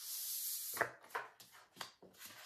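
Cards sliding across a tabletop with a hiss, then a quick run of about four sharp taps as cards are set down.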